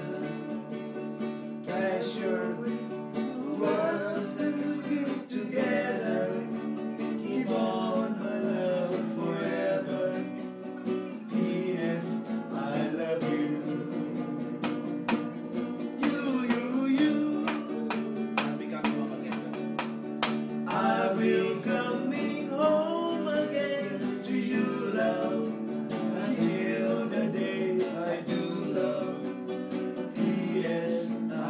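Men singing together to a strummed acoustic guitar.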